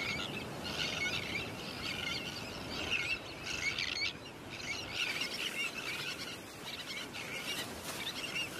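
Terns calling in a breeding colony: many overlapping high, chirping calls with no pause between them.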